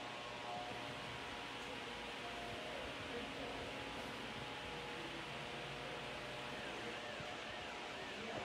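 Electric hair clipper running steadily while cutting long hair, heard as an even buzz and hiss.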